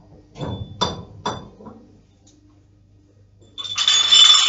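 Barbell gear being handled between lifts: a thud and about three ringing metal clinks in the first second and a half, then, near the end, a loud continuous metallic jangle as the barbell is worked at its plates.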